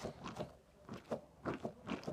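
An Orbeez-filled squishy toy squeezed in the hands: a run of short, irregular squelching clicks as the water beads shift inside the stretchy sack.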